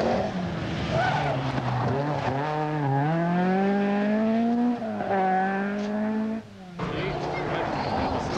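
Opel Manta 400 rally car's four-cylinder engine at high revs as it approaches and passes at speed. Its pitch climbs through a gear and drops at an upshift about halfway through. The sound breaks off abruptly near the end, and another engine follows.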